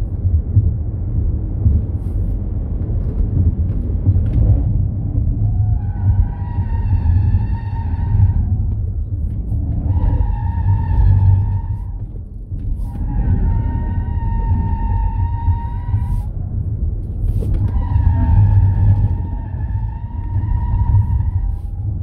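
Tyres of a Ford Mustang Mach-E GT squealing through corners at track speed: four squeals of a few seconds each over a heavy low rumble of road and wind noise. The car is electric, so there is no engine note.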